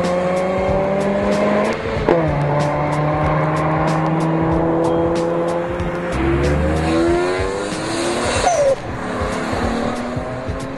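A car engine revving hard under acceleration: its pitch drops sharply at a gear change about two seconds in, holds steady, then climbs again before another drop near the end. Tyres squeal, spinning hard enough in a burnout to raise smoke.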